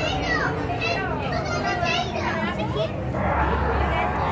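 Young children's high voices calling and chattering over a background of crowd noise, the sound of children playing. Near the end, a broad rushing noise with a low rumble rises under the voices.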